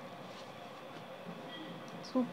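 Faint steady background noise with a few soft rustles of a saree's fabric being handled and smoothed by hand.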